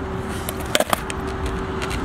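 Skateboard wheels rolling on smooth concrete, with a couple of sharp clacks from the board about three-quarters of a second in.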